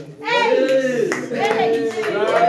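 Hand claps mixed with the lively voices of a group of men.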